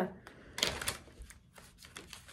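Deck of tarot cards being shuffled by hand: a quick cluster of crisp card clicks about half a second in, then a few lighter flicks.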